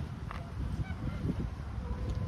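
Wind rumbling on the microphone outdoors, with a few faint, short bird calls.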